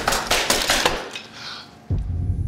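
A volley of crossbows fired in quick succession: a rapid string of sharp snaps, several a second, that dies away about a second in.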